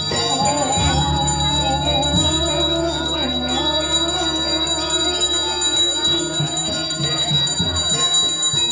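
Balinese priest's genta, a bronze hand bell, ringing continuously with a steady high tone during puja, over a wavering chanted melody.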